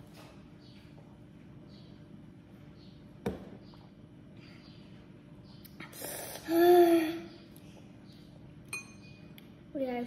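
A child's breathy, voiced "hah" about six and a half seconds in, a reaction to the burning heat of spicy noodles. Earlier comes a single sharp knock as a plastic cup is set down on the wooden table.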